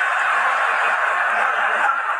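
Sitcom studio audience laughing: a steady, loud wash of crowd laughter after a punchline.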